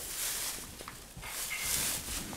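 A horse breathing out hard through its nostrils twice, two breathy rushes of air, the second one longer.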